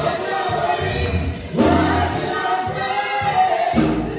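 Gospel praise team of several singers singing into microphones, with keyboard and bass guitar accompaniment.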